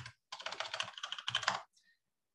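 Rapid typing on a computer keyboard: a quick run of keystrokes lasting about a second and a half.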